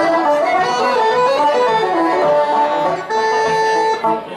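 Irish traditional tune played by an accordion with other instruments, the melody running on and then settling about three seconds in on a long held final note as the tune ends.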